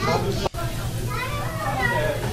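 Voices talking, a child's among them, over a steady low hum; the sound cuts out for an instant about half a second in.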